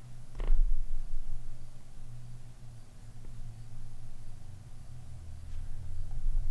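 Steady low room hum, with one dull thump about half a second in and a couple of faint ticks.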